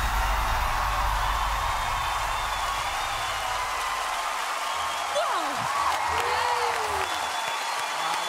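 Studio audience applauding and cheering, with a few whoops rising over the clapping in the second half. The low end of the music dies away in the first few seconds.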